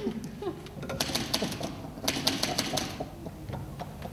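Typewriter keys striking in two quick runs of clicks, one about a second in and the other about two seconds in.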